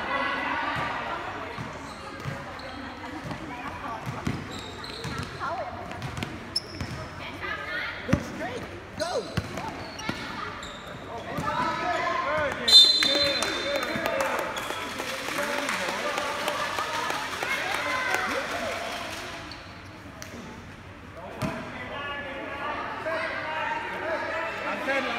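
Youth basketball game: a ball bouncing on the court floor amid players and spectators calling out, with a brief shrill high sound, the loudest moment, about halfway through.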